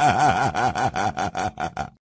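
An electronically processed laugh in a voiceover jingle: rapid 'ha-ha-ha' pulses, about five or six a second, each rising and falling in pitch, growing shorter and fainter toward the end.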